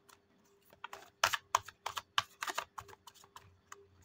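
A deck of tarot cards shuffled by hand: an irregular run of crisp card clicks and slaps, starting about a second in.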